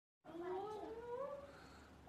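A single drawn-out vocal call that slides slowly upward in pitch for about a second, then fades.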